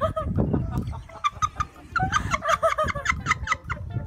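A rapid string of short, high clucking calls starting about halfway through and repeating several times a second, over some low rumbling noise in the first second.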